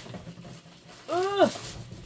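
A short wordless vocal sound, a little over a second in, that rises and then falls in pitch, with faint handling noise before it.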